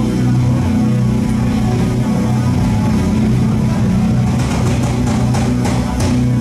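A rock band playing live through a club PA: electric guitar, bass and drums at full volume, heard from within the crowd. Sharp cymbal hits come in a cluster in the second half.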